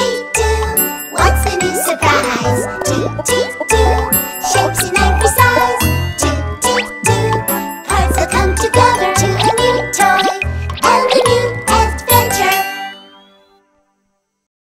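Upbeat children's cartoon theme tune with a steady bass beat of about two a second and bright, jingling chimes over it. It fades out shortly before the end.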